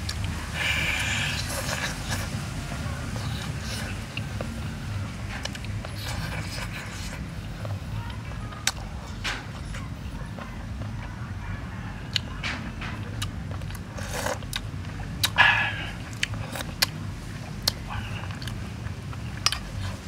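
A person eating chicken on the bone: chewing and smacking with scattered short sharp clicks, over a steady low background rumble.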